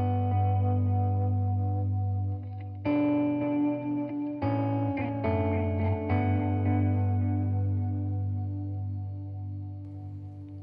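Electric guitar played through a Diamond Memory Lane Jr. delay pedal with no reverb, set to dotted-eighth repeats with its modulation turned up. Sustained chords are struck about three seconds in and again several times between four and six seconds, each ringing on with its repeats and easing off near the end.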